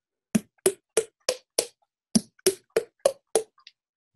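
Fingers flicking the front of the throat while the mouth holds a vowel shape, each flick a short knock pitched by the vocal tract's first formant, the 'under vowel'. About ten taps come in two runs of five, roughly three a second, with a short pause between the runs.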